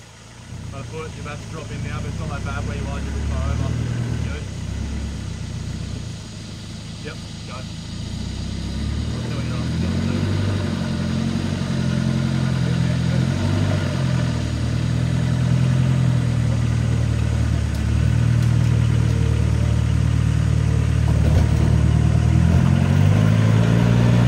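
Land Rover Discovery 1's 300Tdi four-cylinder turbo-diesel engine labouring as it crawls up a rocky climb, its note rising and falling with throttle and getting louder through the second half.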